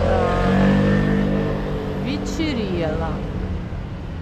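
An engine running close by, a steady low drone that is loudest in the first second or two, with people's voices over it.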